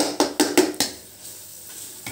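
Spatula knocking and scraping against a pan while stirring frying spice paste and sliced green onions: about five quick strikes in the first second, then quieter frying.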